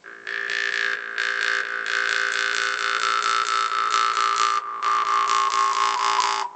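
Brass geng gong (a jaw harp) twanged continuously, giving a buzzing drone. A bright overtone melody shaped by the mouth glides slowly downward, breaks briefly about four and a half seconds in, then falls again.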